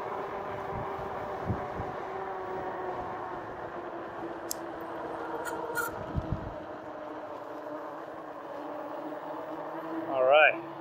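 Steady riding hum of a 2018 RadRover fat-tyre e-bike rolling on pavement at speed, with several pitched lines that sink a little as the bike slows. Two low bumps, one early and one past the middle, and a few light clicks are heard over it.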